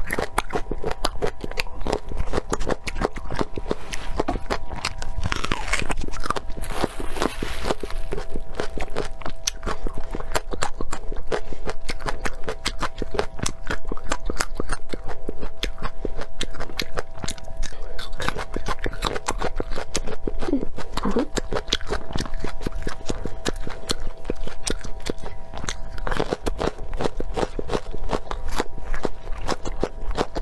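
Close-miked crunching and chewing of raw vegetables: a dense, unbroken run of crisp bites and chews. A faint steady tone sits underneath.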